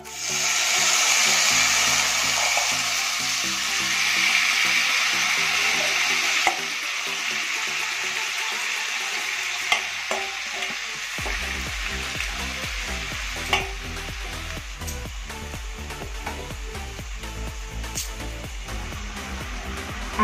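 Spice-coated chopped button mushrooms and onion dropped into hot refined oil in a kadai, sizzling loudly at once and then frying with a steady sizzle that slowly eases. A few sharp clicks sound through it.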